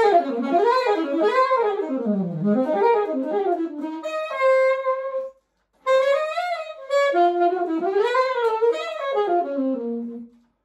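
Solo saxophone playing melodic phrases that run up and down, with a held note a little past four seconds in. A brief pause for breath falls just past five seconds, then a second phrase ends near the end.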